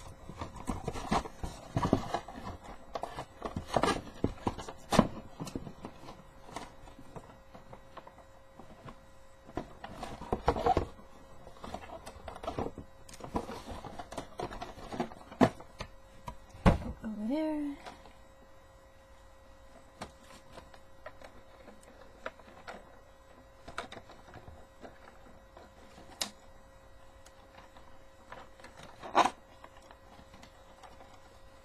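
Hands unpacking a toy from its cardboard box and clear plastic bag: irregular clicks, taps and rustles of cardboard and plastic, busy in the first half, sparser later, with a louder clatter near the end. A faint steady hum runs underneath.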